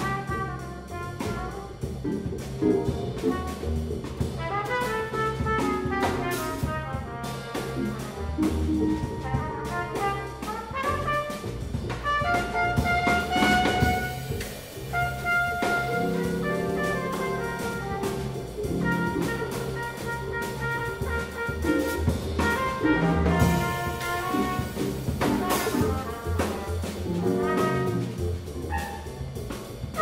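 Jazz combo playing: trumpet leading over electric guitar, keyboard, upright double bass and drum kit.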